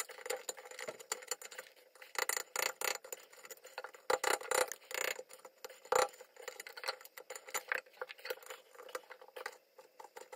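Hand tools clicking and scraping on a seized, rusted toilet cistern bolt soaked in WD-40 that will not turn: pliers gripping the bolt, then a screwdriver scraping and prying in the corroded bolt hole. The sound is a quick, irregular run of sharp metallic clicks and scrapes, the loudest about four and six seconds in.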